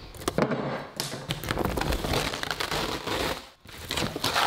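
Reflective foil insulation under the floor being pulled back and crumpled by hand, making an irregular run of crackles.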